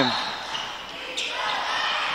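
Gymnasium crowd noise during a live basketball game. The crowd grows louder a little over a second in.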